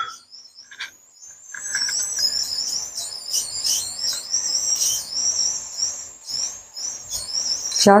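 Small birds chirping and twittering continuously in a high, busy chatter, with a few light clicks of a metal spoon.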